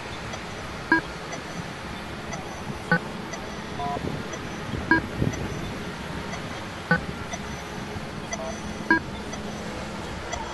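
A short, sharp beep repeats exactly every two seconds, five times, over steady city-street traffic noise. The traffic swells briefly near the middle.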